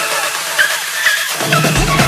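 Background electronic dance music: synth notes with short sliding pitches, then a deep bass and kick drum come in near the end and the music gets louder.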